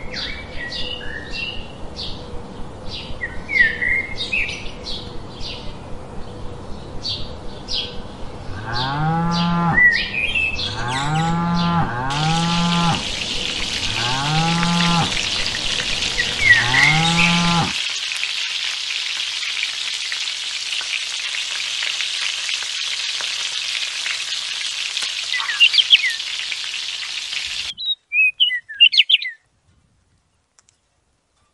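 A layered rural soundscape. Birds chirp over regular ticks of about two a second, then cattle moo five times. A steady high hiss starts partway through and runs until near the end, when a few short high chirps follow.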